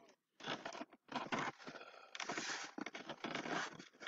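About four short bursts of rustling, scraping noise close to the microphone, separated by brief quiet gaps.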